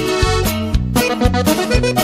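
Instrumental passage of a norteño corrido: accordion over bass notes and a steady beat, with no singing.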